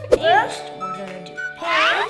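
Background music under a young child's high, sliding vocal sounds, once soon after the start and again, louder, near the end.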